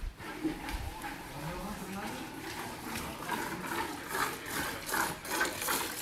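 Milk squirting into a metal pail as a Holstein cow is hand-milked, a run of quick, short squirts in the second half.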